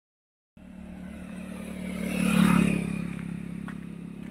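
A motor vehicle engine running, its sound swelling to a peak about two and a half seconds in and then fading, as a vehicle passes by on the road.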